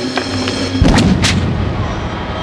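Film fight sound effects over a music score: a heavy thud a little under a second in, followed quickly by two or three sharp cracks as one man attacks another.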